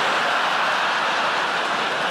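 Large theatre audience laughing and applauding together, a loud, steady wash of sound.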